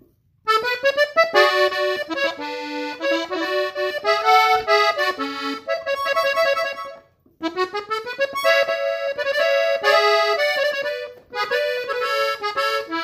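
Three-row diatonic button accordion tuned in E, played solo: a norteño melody in A major at normal tempo. It starts about half a second in and breaks off briefly a little past halfway before carrying on.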